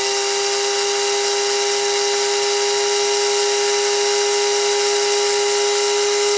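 Electric drill with a 1 mm bit running at a steady speed with an even motor whine, boring a small hole into the end of a plastic toy gun barrel.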